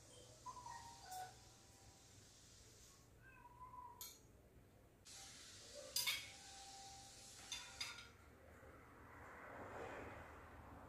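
Quiet eating sounds: a fork and knife clinking against a plate a few times, loudest about six seconds in and twice more near eight seconds, with a few faint short squeaky tones in between.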